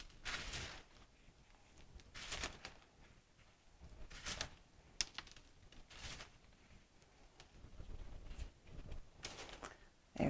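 Faint, soft scraping and tapping as a wooden star is pressed and rubbed into a tray of dry spice powder on a foil baking pan. The sounds come as several short brushes spread apart, with a closer run of them near the end.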